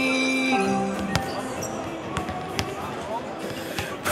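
The held chord of a song dies away about half a second in. Through the lull that follows, a basketball bounces on a hardwood court several times, each a separate sharp thud.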